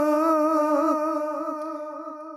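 A man's unaccompanied voice holds one long sung note of a devotional naat, with a slight waver in pitch. The note fades away toward the end.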